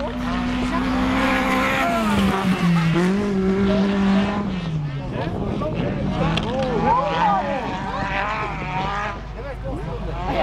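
Autocross special race car engines running around a dirt track, the engine note falling and rising again as the drivers lift off and accelerate through the course.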